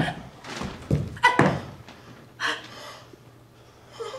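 A few heavy thumps of running footsteps on a stage floor, the loudest about a second in with another just after.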